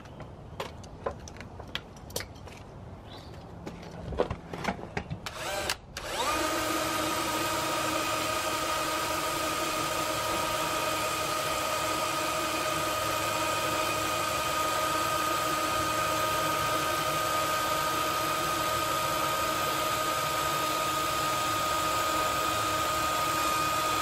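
A few clicks and knocks of handling, then from about six seconds in a cordless drill driving a drill-powered winch runs at a steady speed and unchanging pitch for about 18 seconds, winding the winch line back in.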